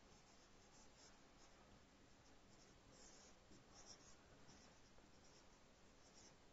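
Near silence with the faint, irregular strokes of a marker writing on a whiteboard.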